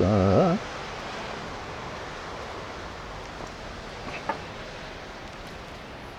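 Steady, even hiss of outdoor background noise on a porch, with one brief faint click about four seconds in.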